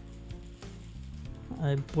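Faint crinkling of the clear plastic wrap around a guitar pickup as it is turned over in the hands. A man's voice starts near the end.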